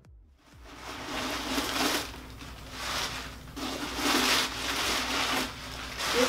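Tissue paper and packaging rustling and crinkling in irregular swells as a leather handbag is unpacked by hand.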